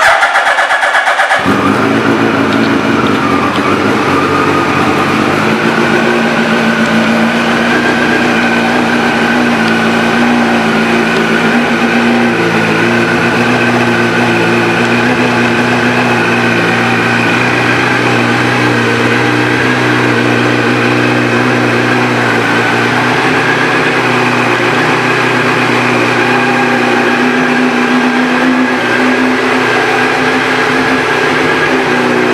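2006 Suzuki Hayabusa's inline-four engine with a Yoshimura exhaust starting up: a brief crank as it begins, catching after about a second and a half, then idling steadily.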